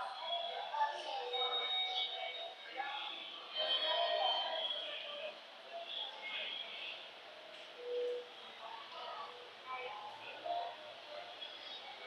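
Indistinct voices and public-address announcements in a railway station, echoing through the concourse and stairwell, with a few short held tones.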